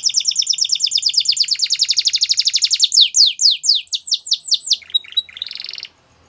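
White domestic canary singing: a fast, even trill of rapid repeated high notes, then slower, louder downward-sweeping notes about five a second, a couple of short chirps and a brief buzzy phrase. The song stops abruptly near the end.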